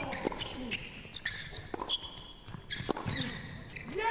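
Tennis ball struck by rackets and bouncing on an indoor hard court during a rally: a series of sharp, irregularly spaced pops.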